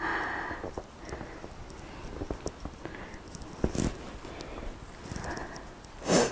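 Soft footsteps on a thin layer of fresh snow on a garden path, with small scattered crunches and one sharper click about two-thirds of the way through. The walker's breathing and sniffing in the cold is heard at the start and again near the end.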